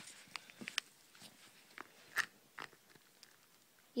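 Light scattered clicks and taps of plastic Skylanders figures being picked up and set down, the loudest click about two seconds in.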